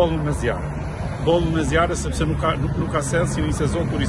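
A man talking over the low, steady rumble of cars passing on the road.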